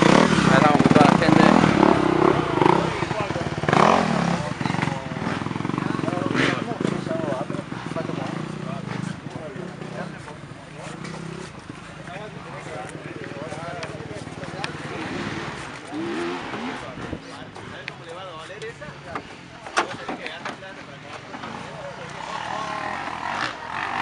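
Dirt bike engine running at low revs, loudest in the first few seconds and fading away over about ten seconds, with indistinct voices.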